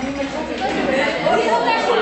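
Many voices chattering at once, overlapping so that no single speaker stands out: the hubbub of a crowd of people talking.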